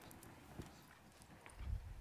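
Faint footsteps on a wooden stage floor: a few soft low thuds, the strongest near the end.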